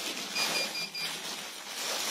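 Clear plastic clothing bags rustling and crinkling as they are handled, with a quick run of four short high electronic beeps about half a second in.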